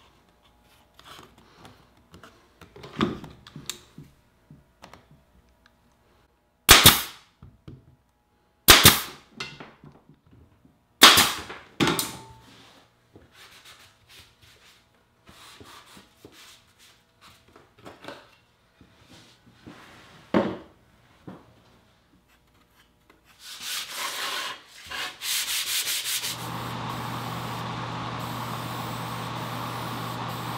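Rag rubbing over the corners of a wooden picture frame. About seven, nine and eleven seconds in come three loud sharp snaps of a pneumatic pin nailer. Near the end an aerosol spray-paint can hisses, first in short bursts and then steadily.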